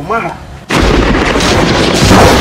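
Lightning-strike sound effect: a loud, crackling noise that starts suddenly about two-thirds of a second in and keeps going.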